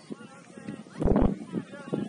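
Voices of players and spectators calling out across an outdoor soccer field, with a louder shout about a second in and a few short low thumps.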